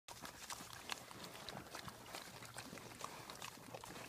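Several pigs eating feed pellets off the ground: a quiet, irregular run of crunches and smacking from their chewing.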